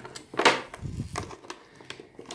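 Plastic packaging and cardboard box being handled and pulled at: one sharp crackle about half a second in, then a few smaller clicks and rustles.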